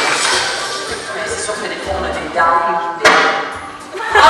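Soundtrack of a video montage played over a large hall's speakers: crowd noise dying away at the start, then voices and a brief stretch of music, with a sharp click about three seconds in.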